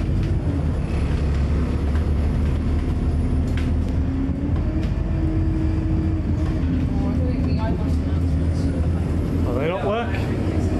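Single-deck bus driving, heard from inside the passenger cabin: a steady low drivetrain rumble and road noise, with a held hum that shifts slightly in pitch. A short rising sweep comes near the end.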